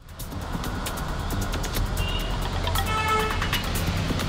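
Road traffic with motorcycles and scooters passing, a steady low engine rumble, under background music with a light beat. A short pitched tone sounds about three seconds in.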